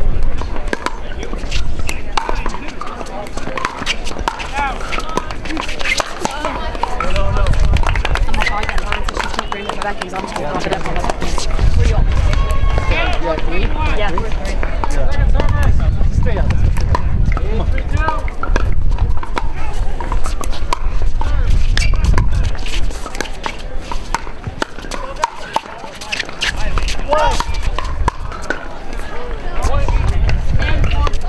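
Pickleball paddles striking a plastic ball, a scatter of sharp pops from this and the neighbouring courts, over a murmur of voices from players and spectators.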